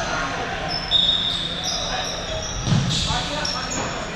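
Futsal shoes squeaking in short, high chirps on a wooden sports-hall floor. A ball thumps about three seconds in, and players call out.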